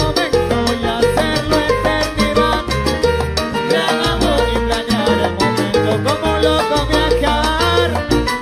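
Salsa music: a loud, dense band passage with a bass line moving in short held notes under quick percussion strokes and pitched instruments.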